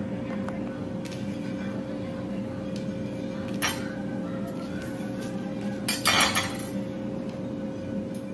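Dishes and utensils clinking and knocking on the counter as food is handled in a salad bowl. There are a few sharp clinks, the loudest cluster about six seconds in, over a steady low hum.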